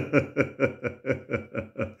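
A man laughing: a run of short, evenly spaced 'ha' pulses, about five a second, getting softer toward the end.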